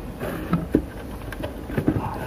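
HDMI cable plug being pushed into the rear HDMI port of a set-top box: a few small sharp clicks and knocks of plug against the metal casing over low handling rumble.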